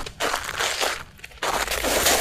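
Crackly, crinkling noise from a sample of rubbed objects and a plastic bag, used as a rhythmic texture, dropping away briefly just after a second in.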